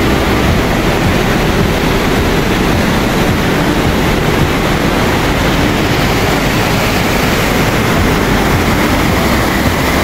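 Loud, steady rush of a fast, turbulent mountain stream in spate.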